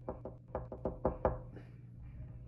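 Knocking on a door: a quick, uneven run of about eight knocks over a second and a half, the last ones the loudest.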